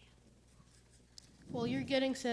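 Low room noise with a faint click, then a person's voice starts speaking about a second and a half in.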